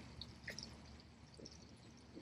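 Near silence: faint outdoor background with a few soft, brief ticks, one about half a second in.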